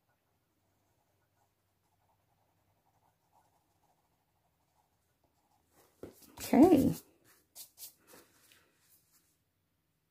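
Faint scratching of a coloured pencil shading on paper. About six and a half seconds in comes one short, loud vocal sound with a rising and falling pitch, followed by a few light scratches.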